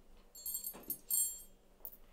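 Two short, high ringing clinks of tableware, glass or cutlery, about half a second apart, the second louder, with a brief soft sound falling in pitch between them.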